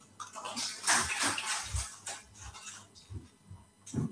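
Brief applause at the end of a speech, loudest about a second in and dying away by about three seconds.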